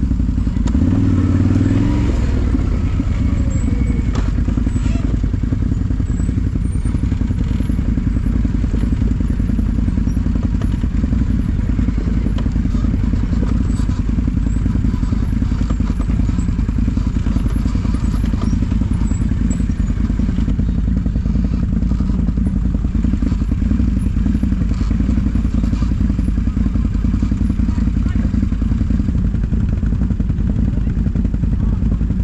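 ATV engine running steadily at low revs while the quad rolls along a rough dirt trail.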